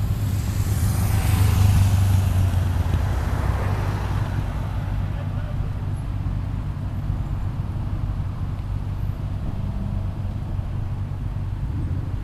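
Cars driving past a junction over a steady low engine hum. The loudest pass comes in the first few seconds, its tyre and engine noise swelling and then fading by about five seconds in.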